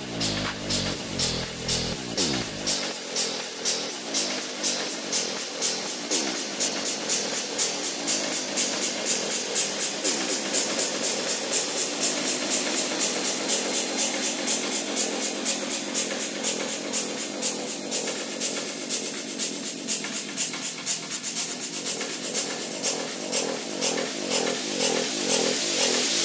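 Techno music in a breakdown: the kick and bass drop out about three seconds in, leaving an even, fast percussion pattern over a synth line. The sound grows brighter toward the end.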